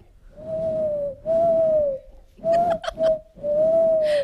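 A person imitating a bird call with the mouth into a microphone, answering a rival bird-call imitator. It is a run of about six whistled notes held at one steady pitch, long ones and a few short ones in quick succession, with breath audible under them.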